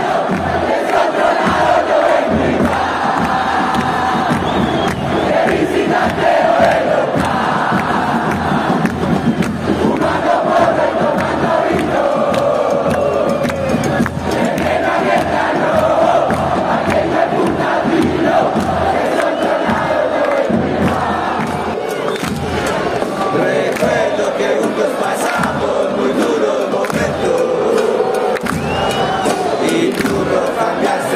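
Football supporters in the stands singing a chant together, a dense, continuous mass of voices that holds steady and loud throughout.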